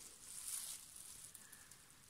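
Faint steady hiss with a few soft handling sounds as plastic-gloved hands tilt a painted canvas.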